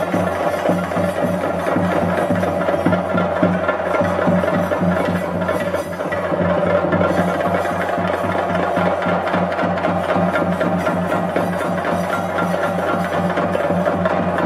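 Chenda drums played by a group of drummers in a fast, continuous roll of stick strokes, accompanying a Theyyam dance.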